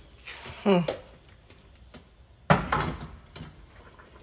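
A single sharp knock about two and a half seconds in, from the glass pot lid being handled over the steel cooking pot.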